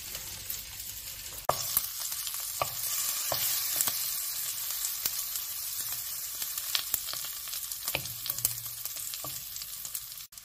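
Halved sausages sizzling steadily in a non-stick frying pan, with a few light knocks of a wooden spatula as they are turned. The sizzle starts with a knock about a second and a half in.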